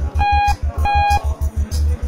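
Lift overload warning beeping twice: two short steady electronic tones in quick succession, signalling that the car is over its weight limit. Background music with a steady low pulsing beat runs underneath.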